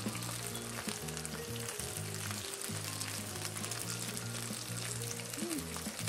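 Whole okra pods sautéing in hot oil in a nonstick frying pan: a steady sizzle with small crackles as the pods are turned. Soft background music with held low notes plays underneath.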